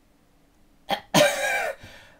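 A man's short burst of laughter: a quick first huff about a second in, then a louder, longer laugh whose pitch falls, trailing off.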